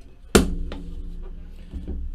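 Sealed boxes of trading cards being handled and set down on a table: one sharp, loud thump about a third of a second in and a lighter knock near the end, over a low steady hum.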